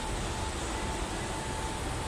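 Steady background noise of a garage workshop: an even hiss over a low rumble, with a faint steady whine.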